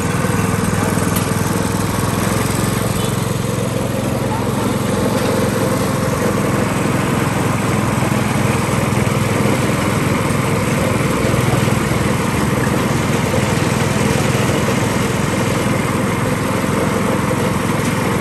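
Sugarcane juice crusher running steadily. Its motor turns the flywheel and rollers as cane stalks are fed through and crushed.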